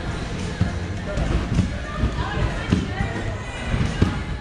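A child bouncing on a trampoline: a series of low thuds as his feet land on the trampoline bed, over background chatter.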